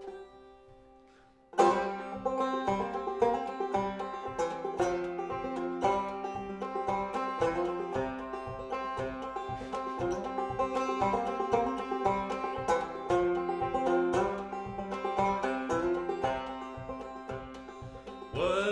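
Solo resonator banjo, fingerpicked: after a second and a half of near quiet it breaks into a fast, steady run of plucked notes, an unaccompanied instrumental introduction to a song.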